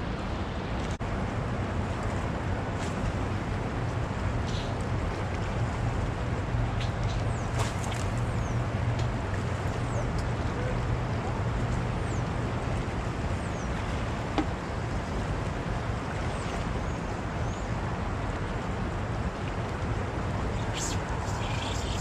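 Steady rush of fast-flowing water below a dam, with a low steady hum underneath.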